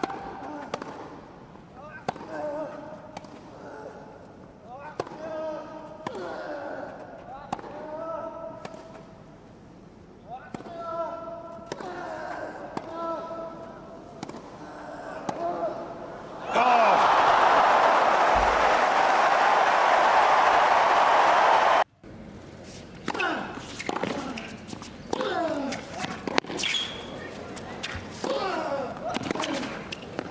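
Tennis rally: sharp racket strikes on the ball, each paired with a player's short grunt, about one a second. Loud crowd applause and cheering follows for about five seconds and cuts off suddenly, then another rally of racket hits and grunts.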